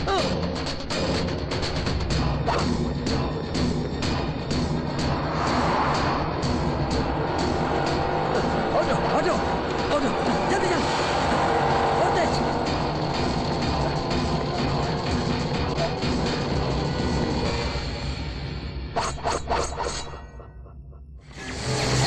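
Dramatic action film score with a driving percussive beat, layered with sound effects. A few sharp hits land near the end, then the sound drops away briefly.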